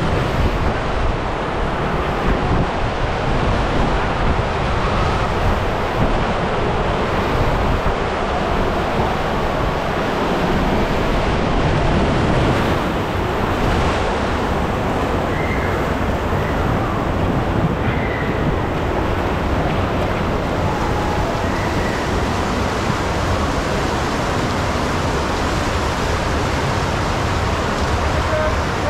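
Water rushing steadily around a large multi-person raft tube as it slides down a water slide and glides through the flooded run-out channel, heard from a camera riding on the tube.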